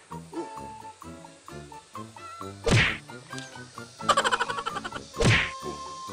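Background music, cut by two sudden whack-like hits about two and a half seconds apart.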